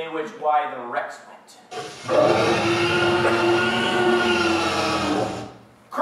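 A loud, sustained cry of about four seconds, starting about two seconds in and cutting off suddenly, holding a nearly steady pitch over a harsh, noisy rasp. Brief voices come just before it.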